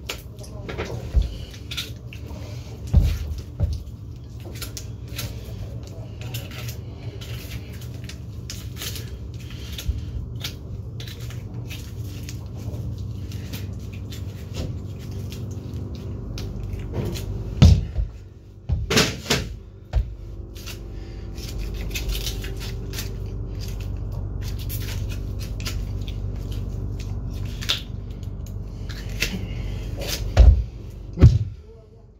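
Butcher's knife cutting and scraping through a hanging leg of veal, with scattered clicks and knocks from the blade, bone and meat being handled; the sharpest knocks come a little past halfway. Under it runs a steady low machine hum that grows slightly louder about halfway through.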